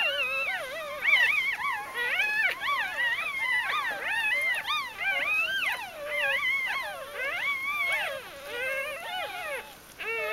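Newborn Bichon Frise puppies squealing and whining, several thin, wavering cries overlapping almost without pause.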